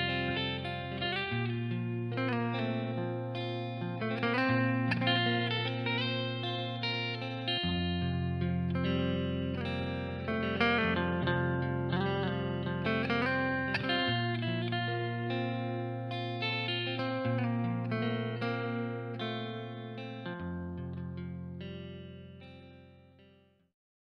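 Telecaster-style electric guitar with OriPure PSL-5 Alnico 5 single-coil pickups playing a melodic lead line with string bends, over sustained low backing notes that change every few seconds. It fades out near the end.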